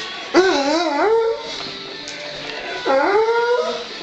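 A German Wirehaired Pointer baying: two drawn-out howls with a wavering pitch, the first just after the start and the second, rising, about three seconds in. Radio music plays underneath.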